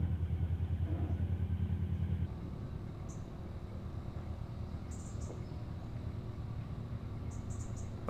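Narrowboat diesel engine running with a steady low thumping beat, about six beats a second. About two seconds in, the sound cuts to a quieter, smoother engine rumble with a few faint high chirps.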